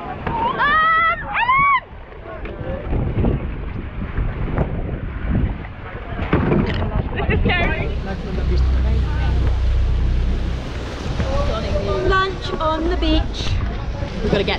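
Choppy sea splashing around an outrigger boat, with wind buffeting the microphone and a deep rumble for a few seconds in the middle. A voice calls out twice near the start, and fainter shouts come through later.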